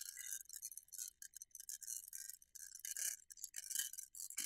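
A slow, deep inhalation through the mouthpiece and tubing of a volumetric incentive spirometer: a faint, fluttering, high-pitched hiss of air drawn through the device, lasting about four seconds.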